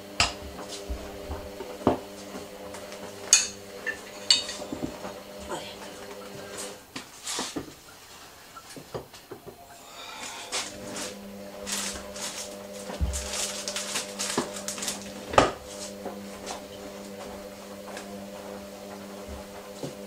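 Clinks and knocks of kitchen items (jars, a utensil holder, a wooden cutting board) being picked up and set down on a stone worktop while it is cleaned, several sharp knocks scattered through, the loudest near the middle. A steady low hum runs underneath, dropping out for a few seconds partway.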